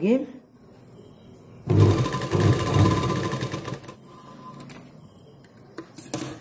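Domestic sewing machine stitching a straight seam through blouse fabric and lining, running for about two seconds from near two seconds in, then dying away.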